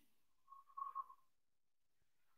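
Near silence, broken once by a brief faint high whistle-like tone lasting under a second.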